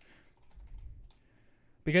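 Faint clicking of computer keyboard typing in a lull, before a man's voice starts up near the end.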